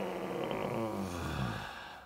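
A Star Wars-style 'Force' sound effect: a low, pitched drone with a wavering, warbling layer above it, muffled as if band-limited, fading out near the end.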